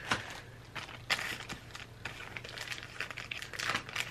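Thin plastic bags crinkling irregularly as bagged hair bows are handled, with the sharpest crackles at the start and about a second in.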